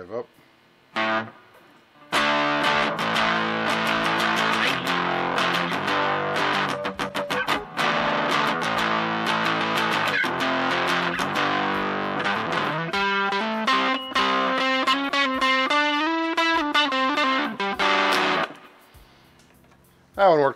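Electric guitar played through a Danelectro Pastrami Overdrive pedal into a multitrack recorder's virtual amp, giving an overdriven tone. A short chord comes about a second in, then some sixteen seconds of continuous riffs and chords, and the last notes ring out and fade near the end.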